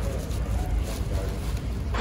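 Thin plastic shopping bag rustling and crinkling as hands open it and pack groceries into a tote, over a steady low rumble of wind or handling noise on the phone microphone.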